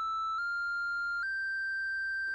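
Moog Subharmonicon oscillator 1 holding a steady synth tone whose pitch steps upward three times in small quantized jumps as a sequencer step knob is turned, moving it up the scale a step at a time.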